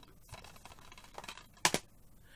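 Plastic Blu-ray case being handled, with a sharp double clack near the end over quiet room tone.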